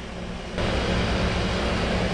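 Steady machine noise, an even rush of air like a running fan or blower, starts abruptly about half a second in, over a low hum.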